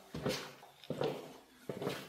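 Three soft footsteps on a hard wood-look floor, about a second apart, at a walking pace.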